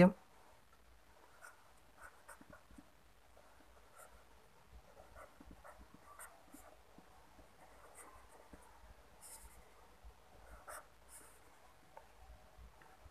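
Pen writing on paper on a clipboard: faint, irregular scratching strokes as letters and symbols are drawn.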